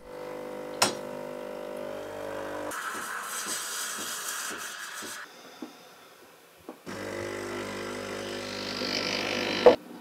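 Breville espresso machine running: a steady electric hum from the pump, then a stretch of loud hissing like the steam wand frothing milk. After a quieter moment with small clinks, the hum and hiss come back, and a sharp clack of the steel jug or cup on the counter comes just before the end.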